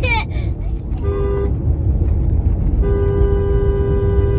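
Car horn sounding over the steady road rumble inside a moving car: a short honk about a second in, then a long held blast from near three seconds in. A brief high falling squeal comes at the very start.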